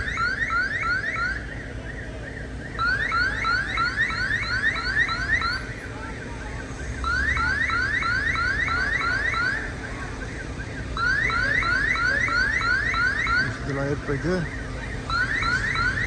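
Building security alarm sounding: rapid rising whoops, about four a second, in bursts of two to three seconds with short pauses between.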